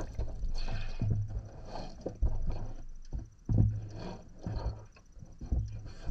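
Water sloshing in a filled tub with irregular dull thumps as feet in soaked shoes shift about under the water.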